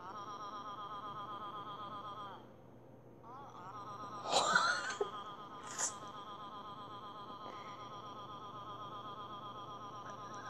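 Google Translate's synthetic Japanese text-to-speech voice reading a long run of 'a' characters: one 'a' sound repeated in an even, buzzing pulse several times a second, breaking off briefly about two and a half seconds in and then resuming. A short, louder breathy sound from a person cuts in about four and a half seconds in.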